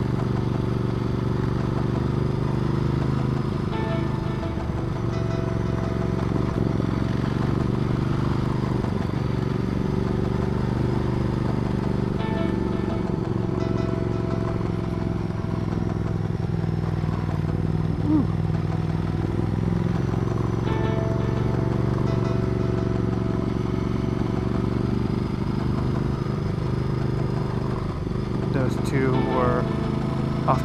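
Ducati Multistrada 1200's L-twin engine running steadily under load up a long climb, its pitch drifting only a little, over wind and road noise.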